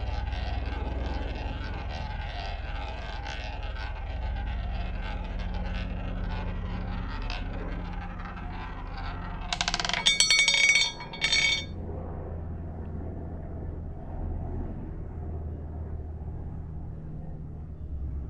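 Wooden roulette wheel spinning, the ball rolling around the track in a steady rumble. About ten seconds in the ball drops, clattering into the pockets in two bright, ringing rattles a second apart, then settles while the wheel keeps turning quietly.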